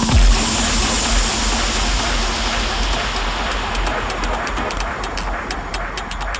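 Electronic dance music transition: a wash of white noise over a low bass drone. The hiss thins out in the second half while a run of high ticks gets faster, building toward the next drop.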